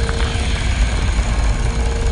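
Loud, steady low rumble with a faint held tone above it: a cartoon soundtrack's sound effects and score under an action scene.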